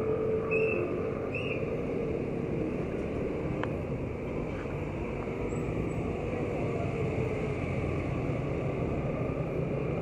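Steady street traffic noise from passing motorcycles, motorcycle-sidecar tricycles and a small truck, their engines running continuously. A few short high chirps come in the first second and a half.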